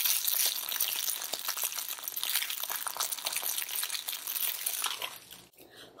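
Close-up crinkling and crackling as a plush Disney Baby Mickey Mouse teether blanket is squeezed and rubbed in the hands for an ASMR effect. It is a dense run of fine crackles that dies away about five seconds in.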